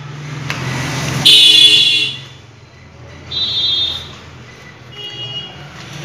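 Vehicle horn honking three times: a loud honk about a second in lasting nearly a second, a shorter one past the middle, and a fainter one near the end, with an engine hum rising just before the first.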